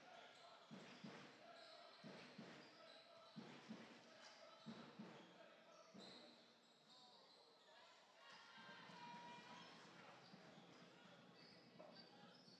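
A basketball being dribbled on the court, its bounces coming about every half-second for the first half and thinning out later, heard faintly in a large hall.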